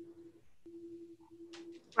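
A faint, steady low hum that breaks off and starts again a few times.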